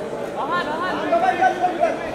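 Several voices calling out and chattering over one another, photographers shouting to the actor for poses, louder in the second half.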